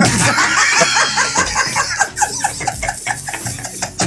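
Several people laughing hard together, a loud burst of overlapping laughter in quick repeated pulses.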